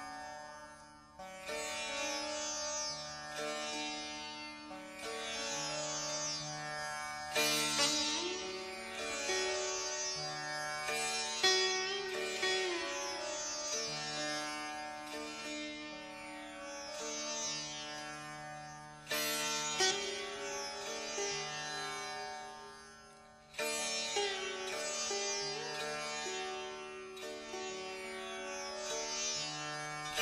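Sitar playing a fugato-style melody in counterpoint, plucked notes ringing with bending pitch slides, over a steady low drone and recurring bass notes.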